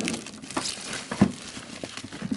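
Cardboard board-game box being handled and opened: crinkling and rustling of the box and its wrapping, with a few small knocks, the sharpest a little over a second in.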